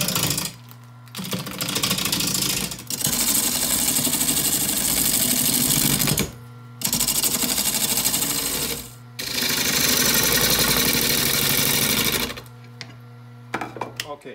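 A gouge cutting an out-of-round bowl blank spinning on a JET wood lathe: a fast, rough rattling chatter as the tool meets the uneven surface, in several bursts of a few seconds with brief pauses, stopping shortly before the end. The steady hum of the lathe motor runs underneath; the blank is still being roughed round and has a flat spot left.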